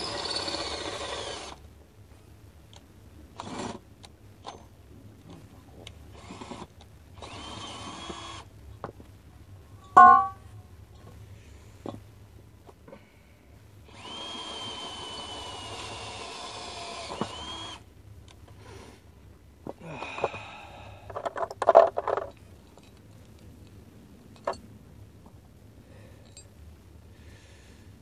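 Power drill running in short bursts, with one longer run of about four seconds in the middle. A single loud knock comes about ten seconds in, and a quick cluster of knocks follows a little past twenty seconds.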